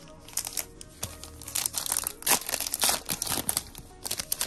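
A foil trading-card pack wrapper crinkling and tearing as it is pulled open by hand: a dense run of sharp crackles starting about a third of a second in.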